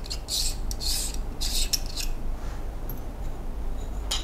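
Threads of a Ulanzi wide-angle lens scraping as it is twisted off its mounting ring: several short scrapes in the first two seconds, then only faint handling.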